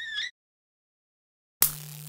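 Sound effects of a logo animation: a brief wavering, whistle-like tone at the start, then about one and a half seconds in a sudden loud hissing burst over a steady low hum.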